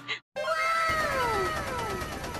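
A comic sound effect added in editing: a long call whose pitch rises briefly and then slides steadily down, with a second falling call over it and an even low pulsing beneath. It starts suddenly just after a short dropout.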